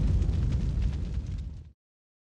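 Tail of a cinematic boom sound effect from a TV channel's outro ident: a deep, low-heavy boom dying away steadily and cutting off to silence near the end.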